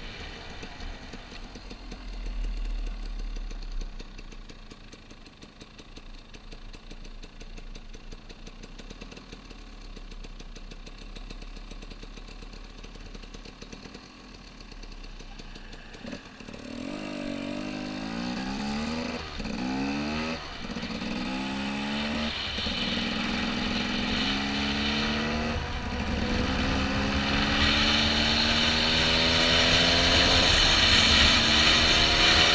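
Dual-sport motorcycle engine running low and quiet for about the first half, then accelerating through the gears from about halfway, its pitch climbing and dropping back at each upshift. Wind noise on the helmet microphone builds as the speed rises, loudest near the end.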